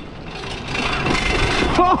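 Wind rushing over the microphone and tyres rolling over gravel as a downhill tandem tricycle runs flat out down a steep track, growing louder over the first second and a half. A rider laughs near the end.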